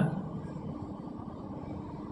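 Steady low background rumble, with no clear event in it.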